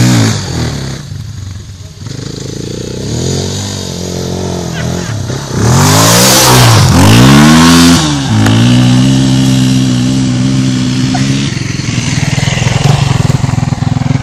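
Yamaha TT-R dirt bike's single-cylinder four-stroke engine revving up hard as the bike tears past close by, its rear wheel spraying dirt, which gives a loud hiss over the engine about six to eight seconds in. It then holds steady revs and fades as the bike rides away.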